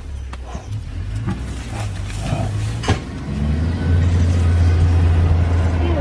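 Vehicle engine running, a steady low hum that grows clearly louder about halfway through, with one sharp click just before the rise.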